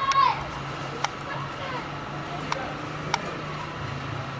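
Three short, sharp cracks, about a second, two and a half and three seconds in, over a steady low hum.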